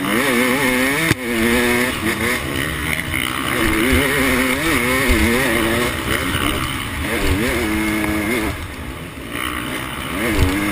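Motocross bike engine heard on board, revving up and falling back again and again as the throttle is worked along the track, with wind rush over the microphone. The revs drop off briefly about a second in and again shortly before the end.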